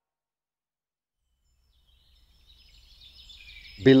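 Silence for the first two and a half seconds, then faint outdoor ambience with birds chirping fading in. A man starts speaking just before the end.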